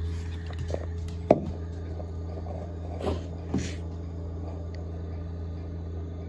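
Steady low hum of a compact tractor's engine running, heard muffled through a house window, with a single sharp click about a second in and two faint short sounds around three seconds.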